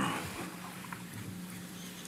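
Room tone from a witness-stand microphone: a steady low hum with faint background noise, after the end of a man's spoken word at the start.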